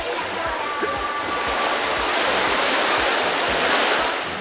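Steady rushing of sea water, like small waves washing near the shore, growing louder through the second half.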